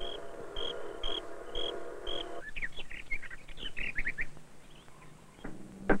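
Outdoor wildlife sounds: a high peep repeated about twice a second over a steady droning chorus, giving way midway to a run of quick bird chirps that fades out. A woodpecker's sharp tapping starts at the very end.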